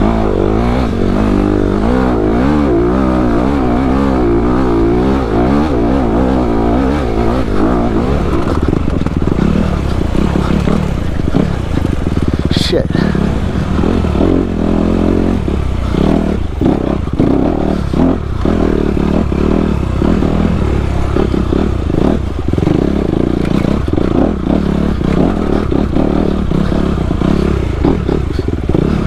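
Dirt bike engine running hard under throttle, its revs rising and falling as it is ridden along a trail. Over the second half, many short knocks and rattles from the bike jolting over rocks, with one sharp knock about 13 seconds in.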